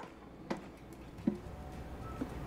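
Faint clicks of a metal cooking tray being slid onto the rack of a countertop air fryer oven: one sharp click about half a second in and a softer knock a little after a second.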